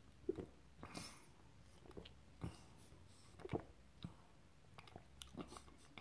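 A person taking a sip of ale and swallowing: a string of faint, irregular gulps and wet mouth clicks.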